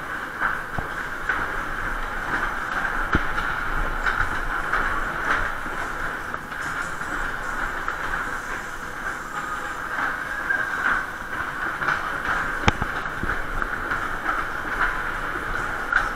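Maxwell Waltzer in full run, heard from on board a spinning car: a steady rumbling clatter of the car and platform rolling over the ride's track, with scattered knocks, the sharpest late on.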